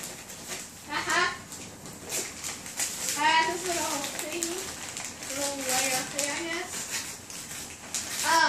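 Wrapping paper crinkling and tearing as a present is unwrapped. Quiet voices come in a few times, one drawn out near the middle.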